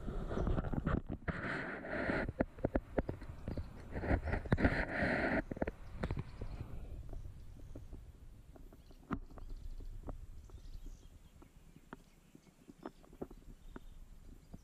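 Muffled water sloshing and knocking on a camera in a waterproof housing as it is handled in the stream. It is loud and full of knocks for about the first six seconds, then drops to fainter scattered clicks.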